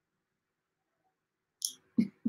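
Near silence for most of it, then about a second and a half in a short breathy puff as a woman starts to laugh.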